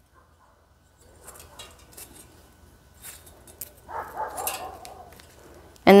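Faint rustling and light clicks of hands tying a thin gold ribbon onto a glittery gold snowflake ornament. About four seconds in, a faint wavering whine is heard for a second or so.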